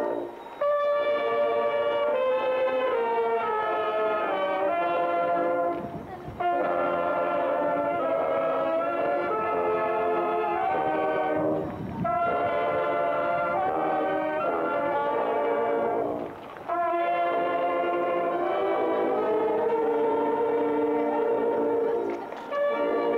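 Marching brass band playing a slow processional hymn in held chords. The phrases run about five seconds each, with brief breaks between them.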